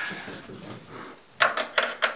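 Hands handling a drum kit's kick drum and hardware: a low rubbing rustle, then two sharp knocks close together about a second and a half in.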